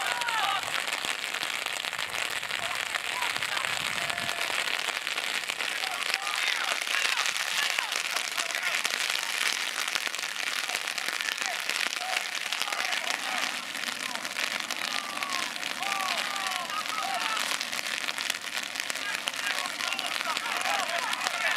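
Rain pattering close to the microphone, a dense steady crackle, with distant shouts and calls from players.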